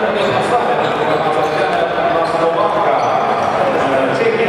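Basketballs bouncing on a hardwood gym floor, with voices talking in the hall.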